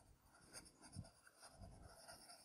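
Faint pencil scribbling on paper: a graphite pencil shading in an answer-sheet bubble with quick strokes going in all directions.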